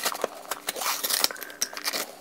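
A plastic tub of greens powder being opened by hand: a quick run of clicks and scrapes from the lid and container, with a short rustle near the middle.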